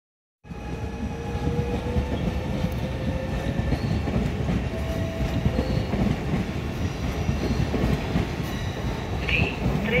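Trenitalia Jazz electric regional train running past close by: a steady, loud rumble of wheels on rails with a faint whine over it, starting abruptly about half a second in.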